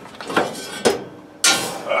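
Large cast iron skillet knocking and scraping on a wire oven rack as it is pulled out of the oven: two light knocks, then a louder scrape about one and a half seconds in.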